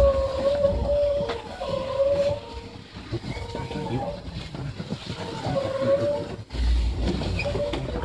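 SAT721 electric multiple unit heard from inside the front cab as it runs slowly along a station platform and brakes to a stop: a low rumble under a steady whine. About six and a half seconds in, the sound drops out briefly and then the low rumble returns louder.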